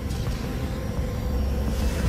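A steady, deep rumbling drone with a faint held tone above it: a sound-design underscore.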